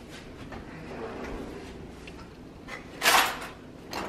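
A kitchen cutlery drawer is pulled open about three seconds in, a short sliding rush of noise that is the loudest sound. Before it there are only a few small clicks and handling noises.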